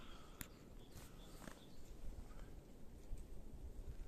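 Quiet winter-forest ambience with a low wind rumble, a few faint bird chirps and three light clicks within the first second and a half.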